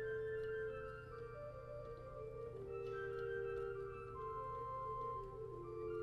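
Pipe organ playing a Baroque piece on a single four-foot flute stop, sounding an octave above written pitch, on the manuals only with no pedal. Two or three lines of held and moving notes flow together.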